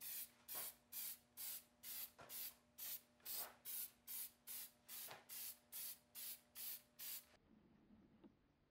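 Rust-preventive spray being applied to a steel hand-saw blade in short, even squirts, about two a second, some seventeen in all, stopping shortly before the end.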